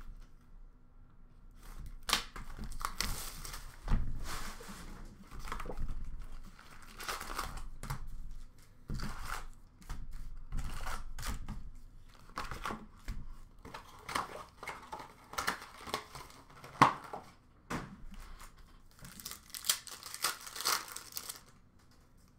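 A cardboard hockey card hobby box being torn open and its foil card packs handled and ripped: a long run of irregular tearing, crinkling and rustling.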